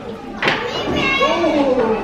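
A child's voice calling out in gliding, high-pitched tones, with a short sharp knock about half a second in.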